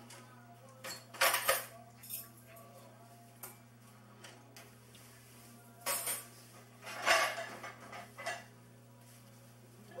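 Scattered clinks and clatter of a kitchen knife and plastic plates at a table, with a knife slicing through an apple. The sounds come in about half a dozen short bursts, the loudest about seven seconds in, over a steady low hum.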